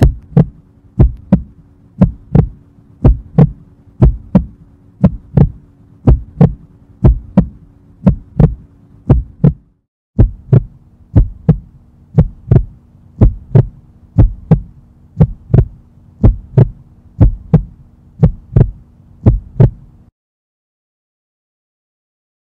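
Heartbeat sound effect: paired thuds repeating about one and a half times a second over a steady low hum. It breaks off briefly about halfway through and stops about two seconds before the end.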